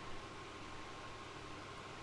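Faint steady background hiss of room tone, with a thin steady high tone running through it.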